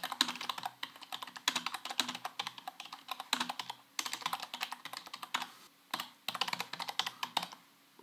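Typing on a computer keyboard: quick runs of keystrokes broken by a few short pauses.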